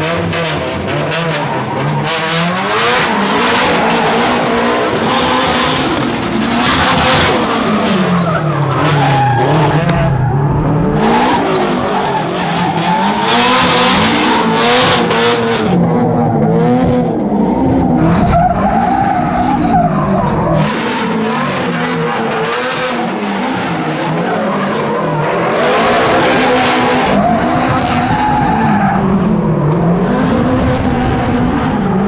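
Two Nissan S13 drift cars drifting in tandem: engines revving up and down again and again, with tyres squealing and skidding.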